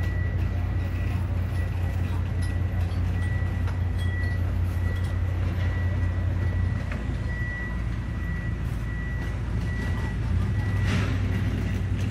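A steady low machine hum with a thin, steady high whine above it. The hum eases slightly in the middle.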